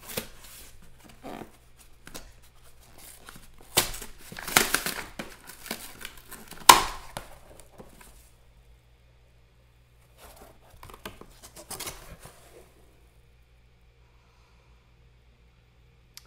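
Corrugated cardboard box being torn open by hand: a run of ripping and crackling, loudest about four to five seconds in with one sharp rip near seven seconds. Softer rustling follows about ten to twelve seconds in, then it falls quiet.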